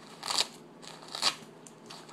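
Soft plastic pack of baby wipes crinkling as it is handled, in two short crackles about a second apart.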